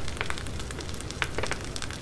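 Thick die-cut paper cards being handled and shifted between the fingers: a light, irregular crackle with scattered small ticks.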